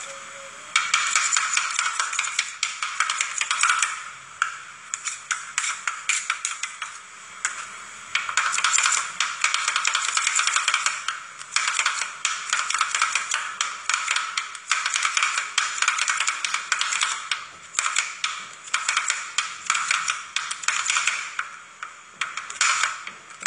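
Two steel spatulas chopping and tapping fast on the frozen steel plate of a rolled-ice-cream pan, mashing cake pieces into the setting cream. It comes as runs of quick sharp clicks with short pauses every few seconds.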